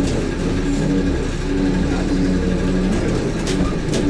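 Engine and road noise of a moving vehicle heard from inside the cabin: a steady low rumble with engine hum, and a few sharp clicks near the end.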